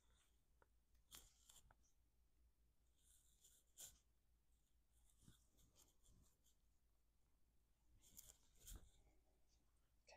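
Very faint, scattered rustling and scratching of gloved fingers brushing over skin and hair, in short clusters a second or two apart.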